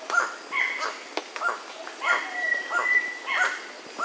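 Crimson-rumped toucanet calling, a run of short calls repeated about once a second, each falling in pitch. A thin, steady high whistle is held for about a second midway.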